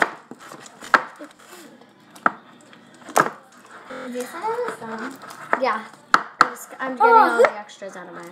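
A utensil stirring and scraping slime in a plastic bowl, knocking sharply against the bowl several times at irregular intervals. A child's brief wordless voice sounds come in the second half, the loudest near the end.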